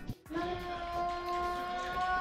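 One long, steady, held pitched note with overtones, like a sung or called note, starting a moment in.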